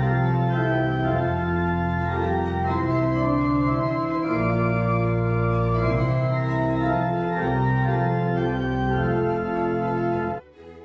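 Church organ playing full, sustained chords over deep held bass notes, the harmony changing every second or so.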